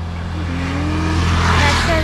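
A motor vehicle passing by on the road, its tyre and engine noise swelling to a peak near the end and starting to fade, over a steady low hum.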